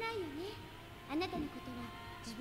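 A woman speaking Japanese, her voice swooping up and down in pitch: subtitled film dialogue, with a faint steady tone held underneath.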